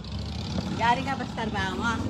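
A man's voice talking from about a second in, over a steady low hum of street noise.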